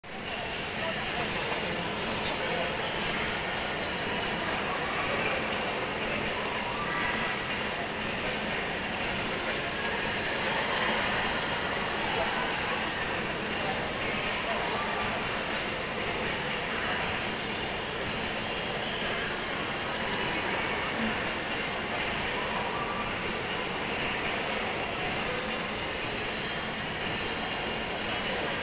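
Steady indistinct chatter of many people, no words clear, over a constant background rush.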